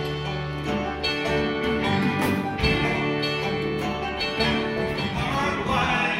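Bluegrass band playing an instrumental passage: banjo and acoustic guitar picking over fiddles, upright bass and drum kit.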